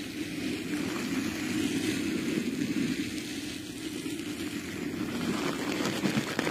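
Steady rumbling rubbing noise from hands working right against an ASMR microphone, with a fainter hiss above it.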